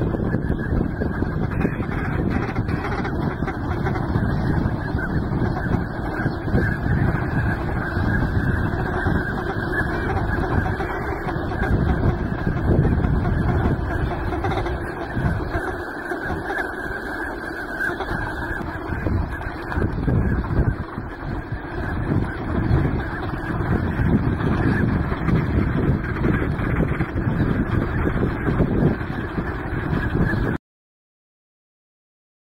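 Steady, dense din of a large flock of Eurasian wigeon and northern pintail on the water, many calls blending into one continuous mass of sound.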